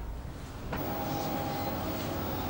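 Quiet room tone, then about two-thirds of a second in a steady mechanical hum with a few faint steady tones sets in, the background of a CCTV control room.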